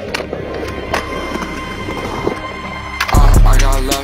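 Skateboard on concrete: urethane wheels rolling, with sharp clacks as the board hits the coping and the ground. A hip-hop track runs underneath, and its heavy bass comes in loud about three seconds in.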